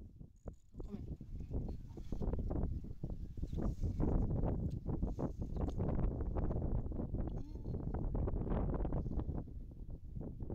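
Goats bleating, over wind buffeting the microphone.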